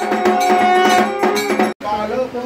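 Puja bells ringing rapidly during aarti: quick repeated metallic strikes over a sustained ringing tone. The sound cuts off abruptly near the end.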